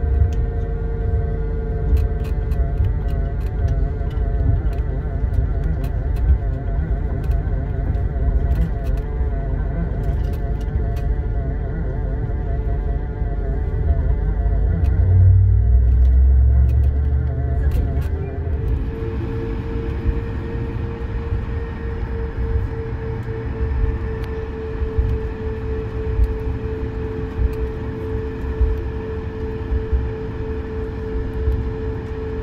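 Airbus A220-100 cabin sound while taxiing: a steady low rumble of the airframe rolling over the taxiway, under the whine of its Pratt & Whitney PW1524G geared turbofans. Around 15 s in the rumble swells briefly. A couple of seconds later the engine tone steps up and brightens as thrust is added, and then holds steady.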